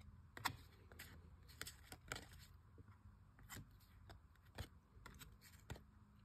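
Faint, irregular clicks and light slides of Topps baseball cards as they are flipped one at a time through a stack held in the hand.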